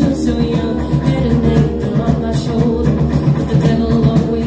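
Live band playing a song: a woman's lead vocal into a microphone over guitar and drums, loud and steady.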